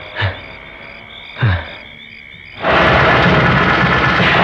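Film night ambience of steady insect chirping, with two short low calls that each fall in pitch. About two-thirds of the way in, a loud, dense music cue starts suddenly and holds.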